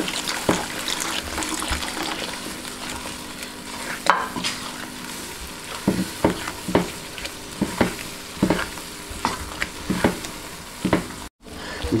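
A silicone spatula stirring and scraping a thick, sizzling milk-and-curd mixture in a hot nonstick wok as milk is poured in. A steady sizzle runs underneath, with repeated scrapes against the pan that come quicker in the second half. The sound cuts out briefly near the end.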